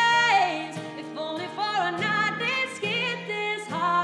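A woman singing a slow country ballad over strummed steel-string acoustic guitar. She holds a long note at the start that falls away with vibrato, then sings on in shorter phrases.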